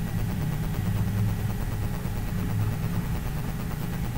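A steady low hum, with no other sound over it.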